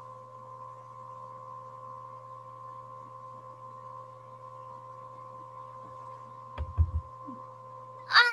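Steady electrical hum with thin higher tones over an open video-call audio line, with a few soft thumps about two-thirds of the way through.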